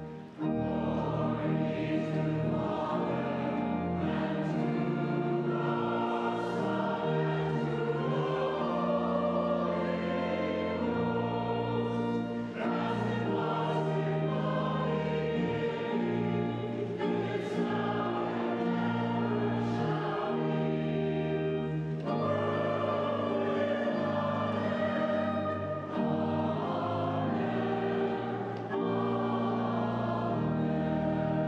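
Congregation and choir singing together, accompanied by a pipe organ holding sustained chords.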